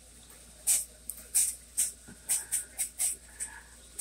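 O gauge toy train locomotive running on the loop, making a repeated little noise: short high-pitched chirps, two or three a second. The owner suspects its motor brushes need replacing.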